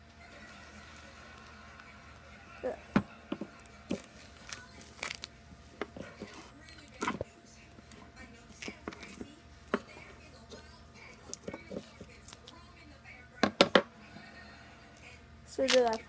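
Scissors cutting strips of duct tape and the tape being handled: scattered short snips and clicks at irregular intervals, with a couple of louder ones near the end.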